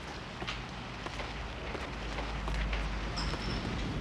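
Quiet, steady background noise, with a low rumble that swells after about the first second.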